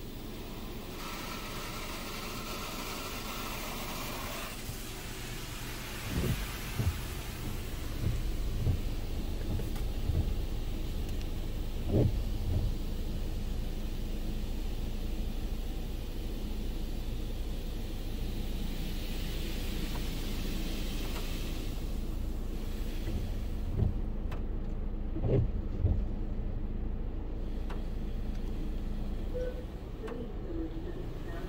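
Belanger Saber SL1 touchless car wash's on-board air-blade dryer blowing over the car, heard from inside the car as a steady low rumble with a few dull thumps. A hiss of spray comes in the first few seconds.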